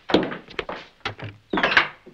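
A wooden interior door being shut: a thud at the start, a few small clicks of the handle and latch, then a louder knock near the end.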